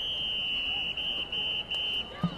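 A whistle blown in one long high blast and then three shorter ones, each steady in pitch.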